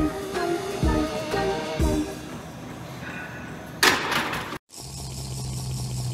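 Background music with a steady beat, cut off about four seconds in by a short loud burst of noise; after a split second of silence, a car engine hums steadily as heard inside the cabin.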